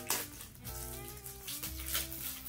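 Cardboard mazapan candy box being opened by hand, its flap and plastic inner wrapping crackling near the start and again near the end, over soft background music.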